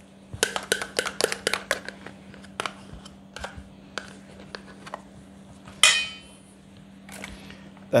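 A metal spoon tapping and scraping in a stainless steel bowl as Greek yogurt is scooped in. There is a run of quick clicks in the first two seconds, then scattered taps, and one louder ringing clink about six seconds in.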